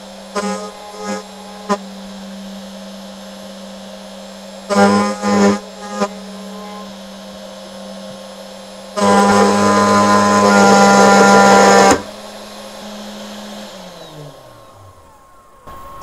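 AnoleX 3030-Evo Pro desktop CNC router's spindle running with a steady whine while its single-flute end mill cuts aluminum in short squealing bursts, then a loud screech lasting about three seconds from about nine seconds in. Near the end the spindle winds down with a falling tone. The end mill breaks during this run; the operator is unsure whether it took too big a bite.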